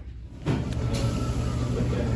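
A steady low hum with a constant drone, which starts abruptly about half a second in.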